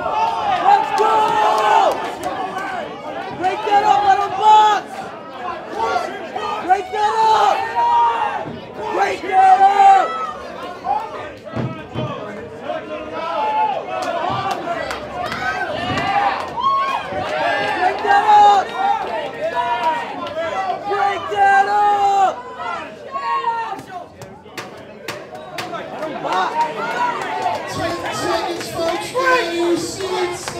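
A crowd of fight spectators and cornermen shouting and cheering, many voices overlapping over steady crowd chatter.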